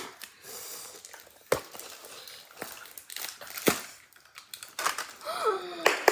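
Wrapper crinkling as it is peeled off a small plastic toy capsule, with two sharp clicks about one and a half and three and a half seconds in. A child gasps near the end.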